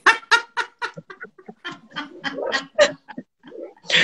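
Women laughing: a quick run of short bursts that grows sparser and quieter, with a second softer round near the middle before it fades out.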